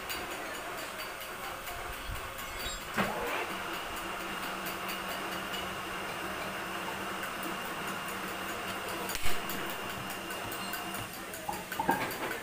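Steady machine hum in a metalworking shop, with a faint high tone over it, while steel bearing half-shells are handled in a lathe fixture: a short click about three seconds in and a sharp metal knock about nine seconds in.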